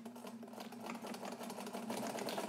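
Necchi BU Nova sewing machine running at medium speed, stitching through four layers of heavy upholstery fabric: a steady motor hum under a rapid run of needle strokes, gradually getting louder.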